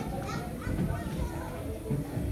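Background chatter of a hall full of people, with children's voices among it, in a lull between the speaker's lines.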